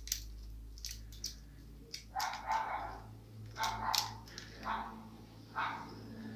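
A dog barking about four times, roughly once a second, starting about two seconds in. Before the barks come a few light clicks of small metal reel parts being handled.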